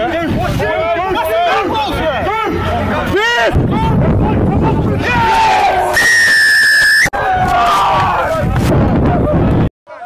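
Several voices shouting on the pitch around a ruck. About six seconds in, a referee's whistle blows one steady blast lasting about a second, rising in pitch at the end.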